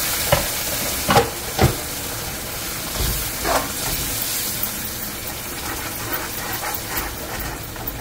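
Curry masala sizzling in a non-stick wok on a gas burner, with a metal spoon scraping and knocking against the pan as it is stirred, several sharp knocks in the first few seconds. A little water has just been added to the frying spice mixture.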